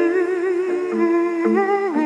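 A woman's voice sings a wavering melody over held drone notes from a wooden lyre (Finnish jouhikko-style folk instrument).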